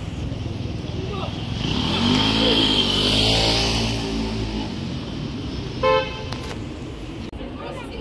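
City street traffic: a motor vehicle passes close by, its engine rising and then fading over a few seconds. About six seconds in comes one short toot of a car horn.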